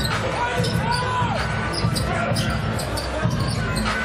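Basketball arena court sound: a steady crowd hum, with the ball being dribbled on the hardwood. There is a brief high squeak about a second in.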